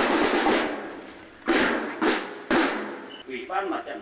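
Ceremonial band percussion: three drum-and-cymbal strikes, the second about a second and a half after the first and the third a second later, each ringing out and fading.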